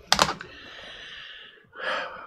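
A man blowing out a long, steady breath of pipe smoke, starting with a short sharp puff, then a quick breath drawn in near the end.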